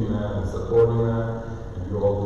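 Speech only: a man's voice preaching a sermon.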